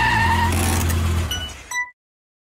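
Intro sound effect of a car driving off: an engine rumble with a rushing hiss that fades out, then two short, bright clinking pings before a sudden cut to silence.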